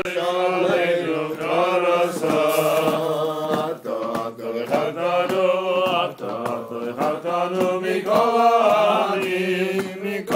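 Vocal music: voices singing a chant-like melody in long held notes, several pitches sounding together.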